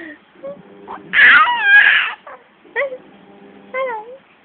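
A five-month-old baby squealing loudly for about a second in a high voice that wavers up and down, then giving two short coos near the end.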